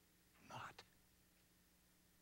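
A man whispering one short word about half a second in, then near silence with faint room tone.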